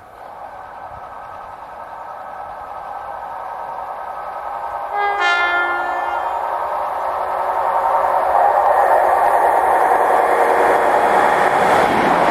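EWS class 92 electric locomotive approaching at speed and growing steadily louder, with a short horn blast about five seconds in. It then passes close by with loud wheel and rail noise.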